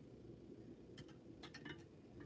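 Near silence with a few faint, small ticks and clicks from a bobbin and thread being wrapped around a hook in a fly-tying vise, laying down a thread base.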